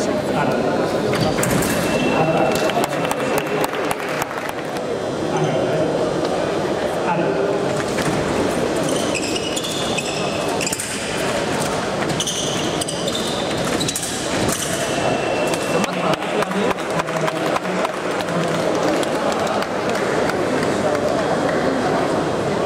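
Chatter of spectators' voices in a large hall, with short clicks from sabre blades and fencers' footwork on the piste. Twice, about two seconds in and again near fifteen seconds, a steady high electronic beep lasts a second or two: the fencing scoring machine signalling a touch.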